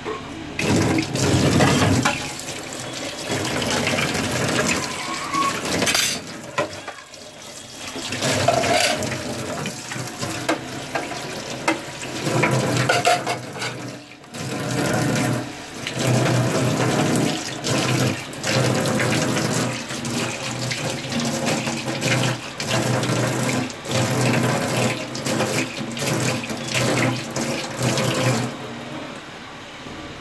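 Kitchen tap running into a stainless steel sink while dishes are rinsed by hand, with splashing and intermittent knocks of the dishes against the steel. The water stops shortly before the end.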